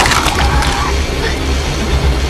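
Horror-film soundtrack of a violent stabbing attack: a hard, cracking impact right at the start, with a few smaller hits and brief gliding pitched sounds after it, over a steady low rumble.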